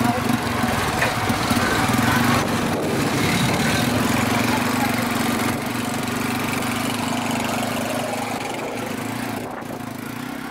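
Motorcycle tricycle's small engine running steadily as it drives along, heard from inside the sidecar; the engine note holds even and eases off slightly near the end.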